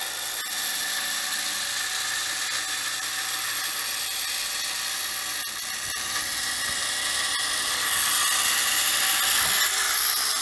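The battery-powered gyroscope wheel inside a Tightrope Walking Gyrobot toy spinning up toward full speed: a steady high-pitched electric whir that grows louder about eight seconds in.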